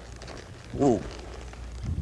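A horse loping on soft arena dirt, its hoofbeats dull and low. About a second in, the rider calls a drawn-out 'ooh', a voice cue to settle the mare and slow her down.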